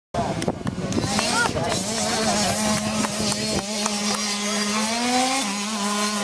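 Motocross dirt bike engines running out on the track, a steady drone whose pitch climbs a little and then drops past five seconds in, with people's voices over it.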